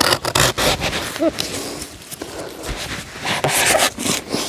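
Irregular rubbing and scraping, a string of short scratchy strokes of uneven spacing.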